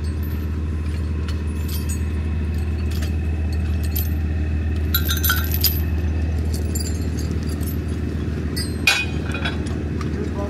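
Diesel engine idling steadily, with metal clinks of chain and rigging hardware being handled: a cluster about five seconds in and the sharpest clink near nine seconds.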